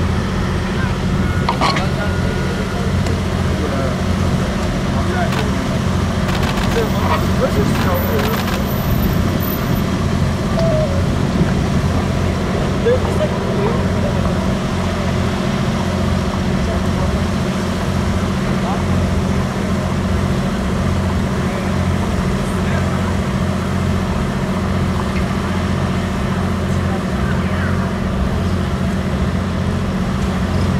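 A steady low engine hum that neither rises nor falls, with faint voices around it.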